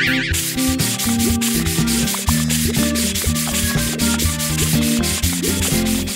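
Cartoon scrubbing sound effect: a sponge scrubbing hard in a fast run of rubbing strokes, several a second, over light backing music.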